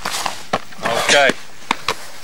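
A man's voice says "okay" amid a few sharp knocks from a football being struck and caught during goalkeeper training: one knock about half a second in and two in quick succession near the end.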